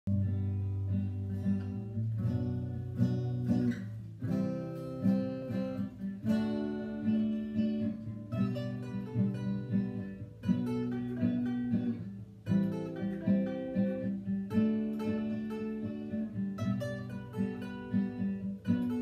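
A steel-string acoustic guitar plays an instrumental intro, with picked and strummed chords in a pattern that repeats about every two seconds.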